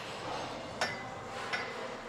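A sharp metallic click a little under a second in and a fainter one later, over steady gym room noise: the selector pin being moved in a cable machine's weight stack to set a heavier weight.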